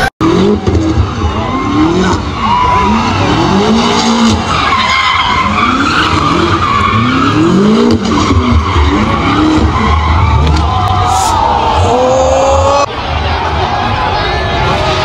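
A car spinning its wheels in a smoky burnout, its engine revving up and down over and over, about once a second, with tyres squealing on the pavement.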